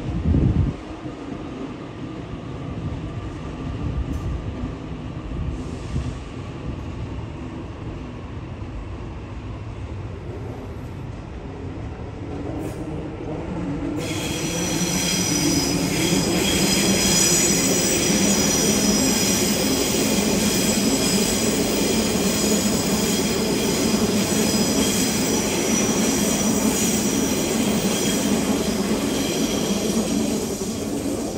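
Sydney Trains Waratah double-deck electric train rolling past on the tracks with a steady rumble. About halfway through the rumble grows louder and a high, steady wheel squeal sets in and carries on. A brief thump at the very start.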